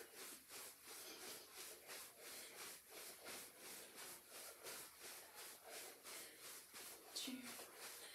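Soft, quick footfalls of jogging in place on carpet, about three to four a second, with a brief voice sound near the end.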